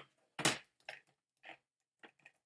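A few separate clicks of computer keyboard keys being pressed: a louder one about half a second in, then fainter ones.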